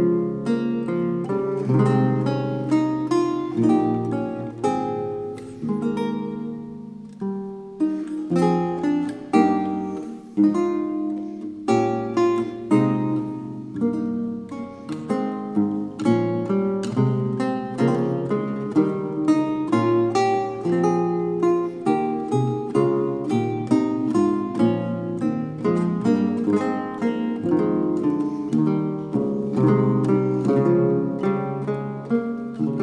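Solo late-16th-century lute by Wendelin Tieffenbrucker, of yew, spruce and maple with long unstopped bass courses, plucked by hand. It plays a continuous stream of quick single-note runs and chords over low ringing bass notes, with a brief lull about ten seconds in.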